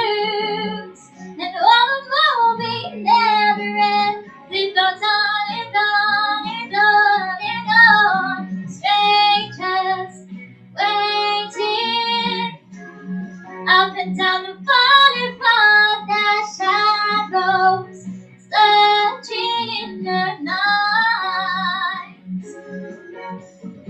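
A girl singing a pop or musical-theatre cover into a handheld microphone, in phrases with short breaths between them, over a steady low accompaniment.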